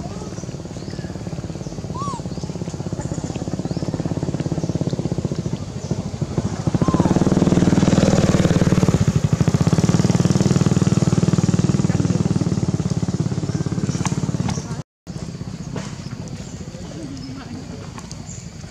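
A small engine running nearby with a fast, even pulse, growing louder about seven seconds in and holding there before a brief dropout near fifteen seconds.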